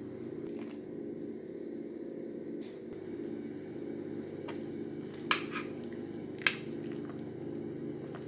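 Pot of vegetable broth simmering, with liquid squishing and dripping over a steady low hum. Two sharp clinks of a metal spoon against the enamelled pot come about five seconds in and a second later.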